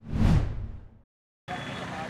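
Whoosh sound effect of a news transition graphic: one swoosh whose brightness falls away as it fades out within about a second. After a short silence, outdoor background noise comes in about a second and a half in.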